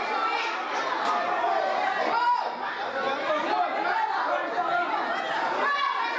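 Indistinct chatter of several voices talking over one another, steady throughout, with no single voice clear enough to make out words.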